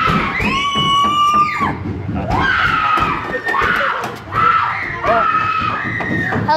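Young people screaming: a run of about six high-pitched, long-held screams, one after another, in fright.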